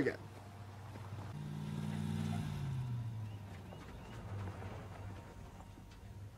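Car engine hum that grows louder about a second in, then drops in pitch and fades away.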